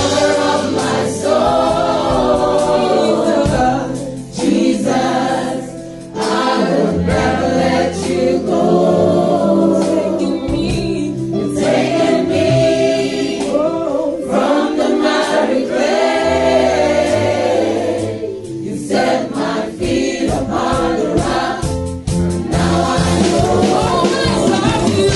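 Two women singing a praise and worship song into microphones over an instrumental accompaniment with a sustained bass line.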